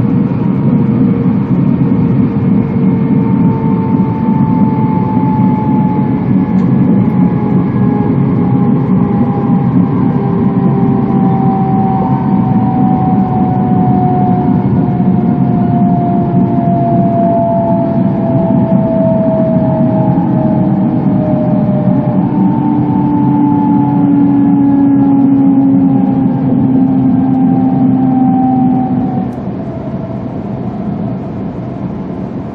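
Cabin running noise of an E2 series Shinkansen train: a loud, steady rumble of wheels on rail with a whine from the traction motors and gears that slowly falls in pitch as the train slows. The noise drops a little near the end.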